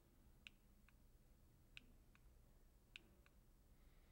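Near silence: room tone with a handful of faint, sharp clicks at irregular intervals.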